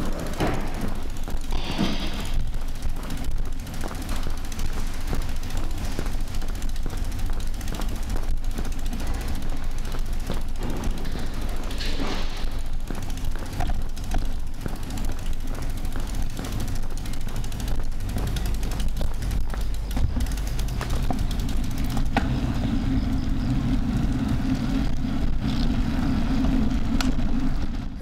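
A bicycle being pushed by hand over paving: a steady low rolling rumble with scattered small clicks, and a steadier hum joining in the last few seconds.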